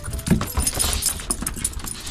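A small excited dog's metal collar tags and leash clip jingling irregularly as it moves and jumps about.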